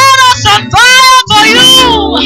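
Women singing a Christian worship song into handheld microphones, amplified and loud, in short phrases of held, bending notes over a low sustained backing.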